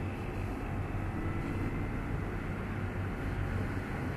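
Steady background noise: a low hum with a faint even hiss, unchanging and with no distinct events.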